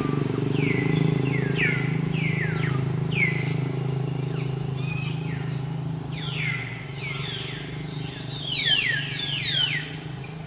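Repeated short, high chirping calls, each sliding downward in pitch, coming thick and fast near the end, over a steady low hum.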